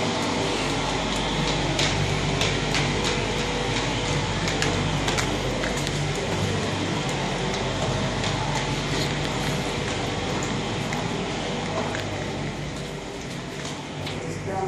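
Steady hum and hiss of indoor background noise, with scattered light clicks and knocks from footsteps and the handheld phone being moved about while walking down stairs.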